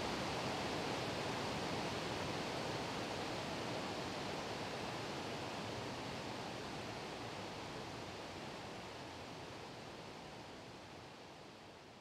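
Water rushing over a river weir in an even, steady wash of noise that slowly fades out over the second half.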